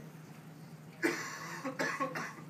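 A person coughing twice: a sharp cough about a second in and another near the end.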